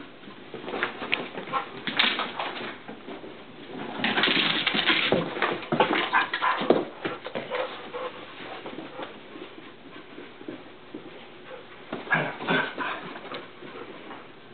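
Two dogs at play: irregular bursts of whimpering and scuffling, loudest from about four to seven seconds in, with another short burst near the end.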